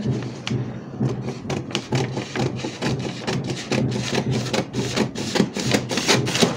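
Scissors cutting through pattern paper: a run of irregular snips with paper rustling, over a low steady hum.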